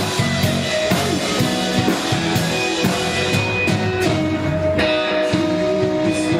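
A live indie rock band playing: strummed acoustic guitar, electric guitar, bass and drum kit, the drums keeping a steady beat of about two hits a second.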